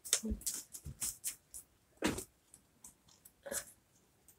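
Origami paper being folded and creased by hand, crinkling in short bursts with brief pauses between them.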